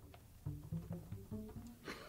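Double bass played faintly: a loose run of short, separate low notes, like noodling between takes in the studio.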